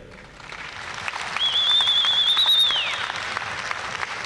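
Audience applause in a large hall, swelling over about the first second, with a long high wavering whistle over it from about a second in that slides down and stops near the three-second mark.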